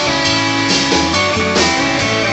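Live blues band playing: electric guitar over bass guitar and drum kit, with a steady beat.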